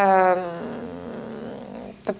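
A woman's drawn-out hesitation vowel that trails off after about half a second into a low, creaky vocal fry, fading until she speaks again.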